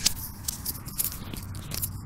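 Wind rumbling on a wired-earphone microphone, with irregular crackling and scraping clicks as the mic on the cable is handled against clothing.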